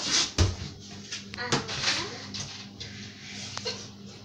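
A dull thump about half a second in, then scattered rustles and light knocks.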